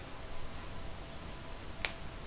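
Faint steady hiss with one sharp click near the end.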